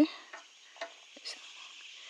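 A man's voice cuts off at the start, then a quiet pause: faint steady background hiss with a few soft clicks.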